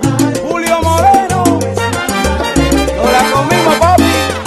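Salsa music: a bass line stepping between notes under quick, even hand percussion, with a melody line above.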